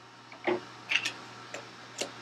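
Water dripping and plinking in an aquarium: about five irregular drops, the loudest about half a second in, over a steady low hum.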